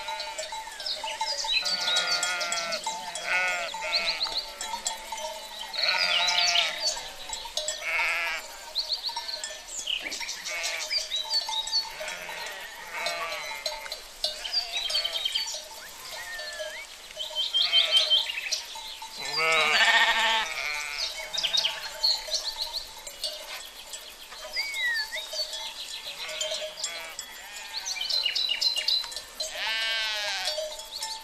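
A flock of sheep and goats bleating over one another, call after call, each bleat wavering in pitch, with short high-pitched calls in between.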